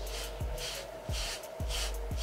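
Hairbrush bristles rasping through short, curly hair in quick repeated strokes, about two a second, each stroke with a soft bump as the brush meets the head.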